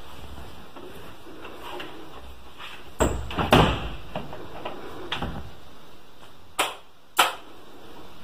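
Knocks and bumps on a wooden door: a loud pair about three seconds in, softer ones a couple of seconds later, and two sharp single knocks near the end, over a steady background hiss.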